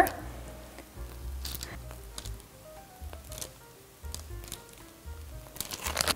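Quiet background music: a melody of short, soft notes over a low bass.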